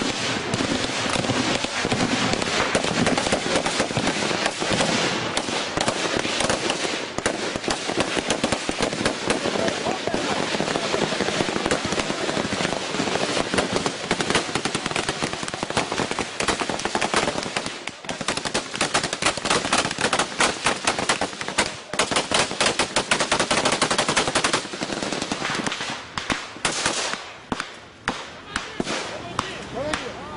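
Heavy automatic gunfire: rifle and machine-gun fire with shots packed closely together and overlapping. In the last few seconds it thins out to separate single shots and short bursts.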